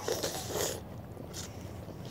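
Faint mouth sounds of children biting and sucking on lemon pieces: soft, hissy smacks in the first second and one more brief one about two-thirds of the way through.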